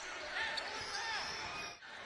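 A basketball bouncing on an indoor hardwood court, heard faintly under the general noise of the hall and players moving.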